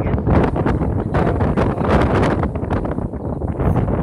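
Strong, gusty wind blowing across the microphone: a loud, low rumble that rises and falls with the gusts.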